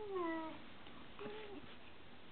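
A dog whining in two drawn-out calls during rough play with another dog. The first and louder call falls in pitch and ends about half a second in; a shorter, fainter whine follows a little over a second in.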